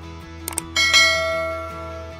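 Two quick mouse-click sound effects, then a bright bell chime that starts suddenly, rings and fades away: the notification-bell sound of a subscribe animation, over a soft music bed.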